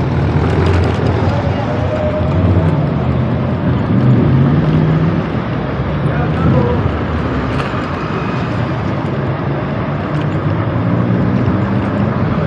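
Road traffic heard while riding a bike in city traffic: a steady rush of noise with the engines of nearby cars running, fuller in the first few seconds.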